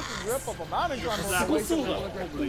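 Several voices talking over one another, with a few short hissing sounds mixed in.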